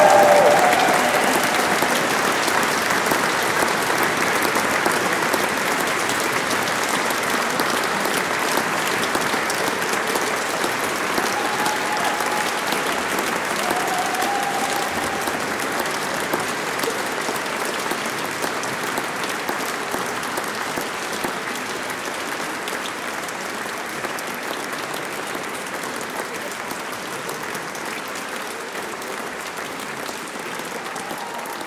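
Concert audience applauding steadily, the clapping slowly dying down toward the end.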